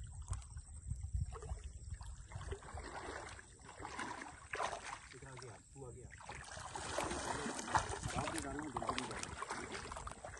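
Shallow lake water sloshing and splashing around wading legs, irregular and louder in the second half. There is a low rumble in the first two or three seconds.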